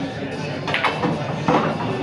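Indistinct background voices murmuring, with two short clicks, about three-quarters of a second and a second and a half in.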